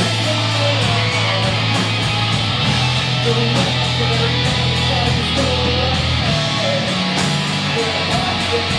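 Live rock band playing: electric guitars and bass through stage amplifiers over a drum kit, with cymbals struck at a steady, quick beat and held low bass notes.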